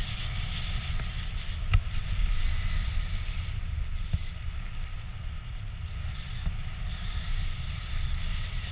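Wind noise from the airflow of paraglider flight buffeting the camera microphone: a steady low rumble with a hiss above it. Two small knocks, one a little under two seconds in and a fainter one about four seconds in.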